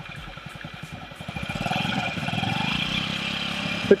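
Honda Ruckus 50 cc scooter engine running with a fast even putter, getting louder about a second in as the throttle is opened, then holding steady.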